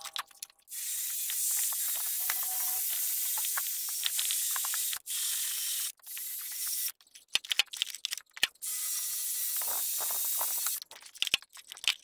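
A wire wheel brush on a cordless drill scrubbing the surface of a cast aluminium-bronze ingot gives a steady, high scratchy hiss in several runs, the longest about four seconds. In the pauses between runs there are sharp clicks and knocks as the metal ingot is handled and reset in the vise.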